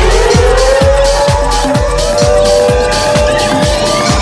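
1990s club dance music: a steady kick drum about two beats a second under long rising synth tones.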